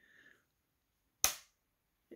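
A copper-plated steel one-penny coin snapping onto the steel casing of a large magnet-fishing magnet: a single sharp metallic click about a second in, with a short ring. The coin is pulled onto the magnet because it is copper-plated steel, not bronze.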